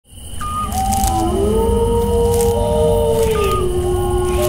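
Eerie horror sound design that swells in quickly at the start: slow, overlapping moaning tones that glide up and down and hold, over a constant low rumble, with a thin steady high whine and a few faint crackles.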